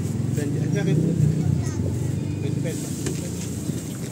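A motorcycle engine idling close by, a steady low rumble, with background voices and small metallic clicks of utensils against a metal bowl.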